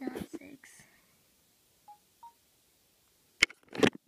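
Two short electronic beeps from a Nintendo DSi's Flipnote Studio menu, the second slightly higher, about a third of a second apart. A brief voice sound comes at the start and two loud sharp bursts come near the end.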